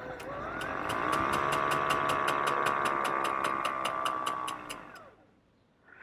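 Electric Velosolex motor spinning up with a rising whine, running steadily, then winding down and stopping about five seconds in. A rubbing brake makes a regular bonk about five times a second while it turns.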